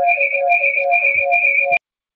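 Electronic warbling tone on the meeting's audio line, a repeating pattern of two alternating pitches at about four pulses a second, which cuts off suddenly near the end.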